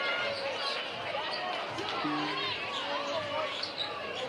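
Basketball dribbled on a hardwood gym floor, over the chatter of a crowd of spectators.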